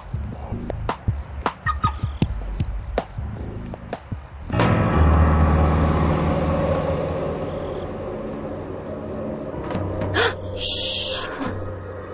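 Footsteps at a walking pace, about two a second, over quiet music. About four and a half seconds in, a loud suspenseful music swell with a deep sustained bass comes in and slowly fades. A short sharp hiss of noise comes near the end.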